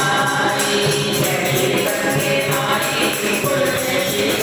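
Group of women singing a Hindu devotional bhajan in chorus, accompanied by a dholak drum, hand clapping and jingling hand percussion keeping a steady beat.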